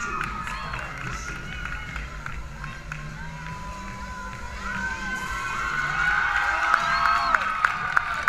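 Crowd of spectators in a large hall cheering and screaming, with many long, high-pitched yells. Over the last second or so, sharp evenly spaced beats come in, about three a second, and the sound grows louder.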